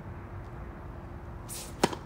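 Tennis racket striking the ball on a slice serve: one sharp pop near the end, just after a brief swish of the swing. A faint steady hum lies underneath.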